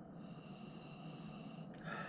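A man sipping beer from a glass and breathing softly through his nose, with a short breath out near the end.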